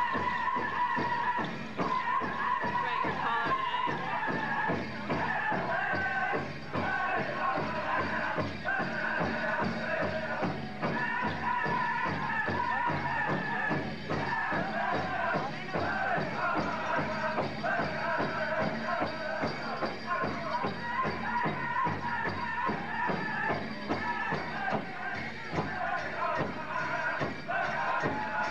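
Pow wow drum group singing a grand entry song, high voices held over a steady beat on a big drum.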